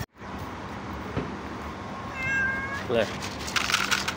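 A kitten meowing once, a high call held steady for about half a second, a little past halfway through.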